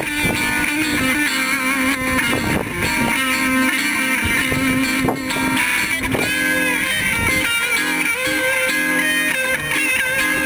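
Electric guitar played through an amplifier, with sustained lead notes that bend in pitch over a repeating low rhythm part, layered with a looper pedal.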